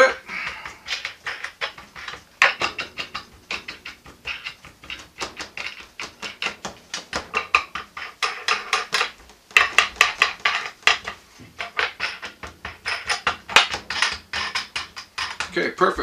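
Wing nuts being turned down by hand on the 5/16 bolts of a metal soap mold: a rapid, uneven run of small metallic clicks and clinks, with a brief pause about nine seconds in.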